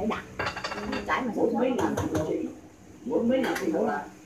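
Small bowls clinking and knocking together on a tiled floor, with a few sharp clinks about half a second in, under people talking.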